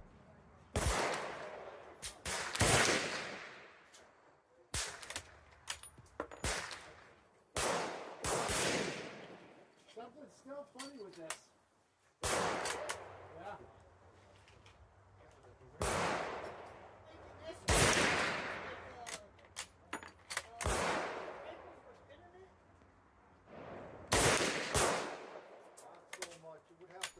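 Danish Krag Jorgensen M1889 bolt-action rifle firing 8x58R cast-bullet reloads, a series of single shots a few seconds apart, each with a ringing tail. Short clicks fall between the shots as the bolt is cycled and the next round feeds from the magazine.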